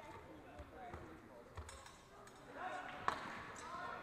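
Low thuds of fencers' footsteps on the mat in a large sports hall, with echoing background voices and one sharp click a little after three seconds in.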